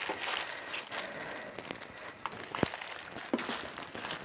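Plastic poly bag crinkling and rustling as it is smoothed and slid into place for heat sealing, with scattered faint clicks and one sharper tap about two and a half seconds in.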